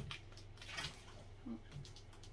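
Faint rustling of a small sticker packet being handled and opened in the fingers, after a short thump at the start, over a steady low hum.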